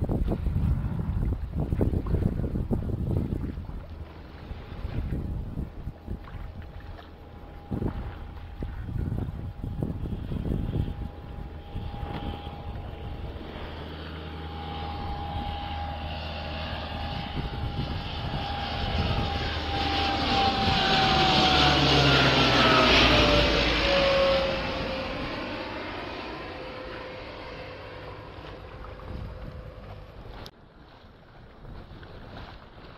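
Propeller aircraft flying over low: its steady engine tone grows louder, peaks about two-thirds of the way through, then drops in pitch as it passes and fades away. Wind on the microphone and water noise with a few knocks come first.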